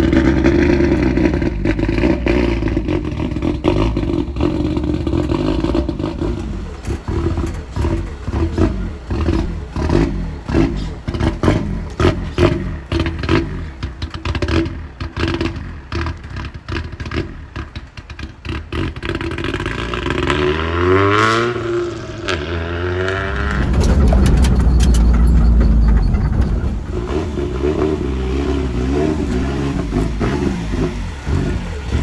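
Nissan S13 Silvia's turbocharged engine with a loud exhaust: idling at first, then a long run of sharp irregular cracks as it moves off, then revving up with a rising pitch about two-thirds of the way in, followed by a loud low rumble and steadier running.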